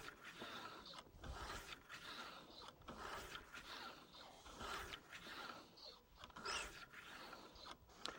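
Cleaning rod working a solvent-wet bore brush back and forth through a rifle barrel: faint scraping that swells and fades with each slow stroke.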